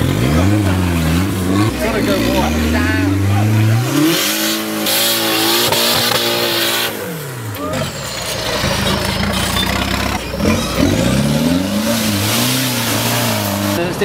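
Off-road competition 4x4 engines revving up and down in repeated bursts under load, climbing a steep dirt slope. The revving eases for a moment about two-thirds through, then rises and falls again near the end.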